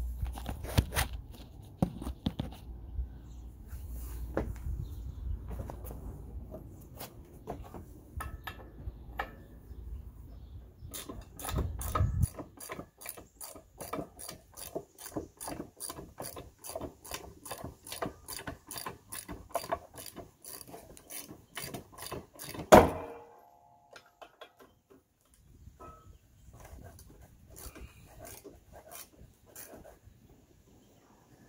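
Ratchet wrench clicking as bolts are backed out of a rusty tractor steering clutch, in a steady run of about three clicks a second. About two-thirds of the way through comes one loud metal clank that rings briefly.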